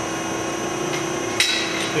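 A sharp metal-on-metal clank about one and a half seconds in, from steel square tubing and the tube bender's die and pin being handled, with a fainter knock near the end. A steady low hum runs underneath.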